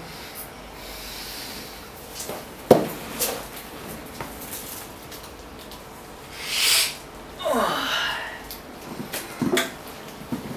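A person snorting powder hard through a rolled-up paper tube, a short hissing sniff a little past the middle, followed by a drawn-out vocal reaction that falls in pitch. A single sharp knock comes about a quarter of the way in.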